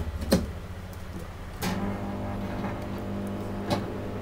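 A click, then about a second and a half in a Godrej grill-type microwave oven starts with a clunk and runs with a steady hum from its cooling fan, lamp and turntable motor. The oven is not heating.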